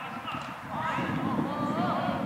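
Footballers' voices shouting and calling across the pitch in long drawn-out calls, over a rough low rumbling noise that swells about halfway through.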